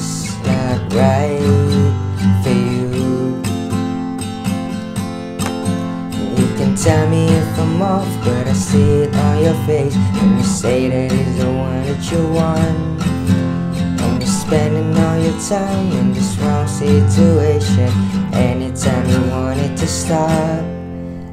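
Yamaha acoustic guitar strummed through repeating A minor, G and F chords in a down, down, up, up, down, up pattern, with a man singing the melody over it.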